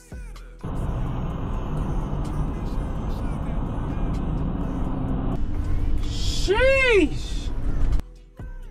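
Steady road and engine noise of a vehicle driving on a highway, picked up by a dashcam microphone, starting about half a second in. Near the end a single pitched sound glides up and back down in pitch, with a brief burst of hiss.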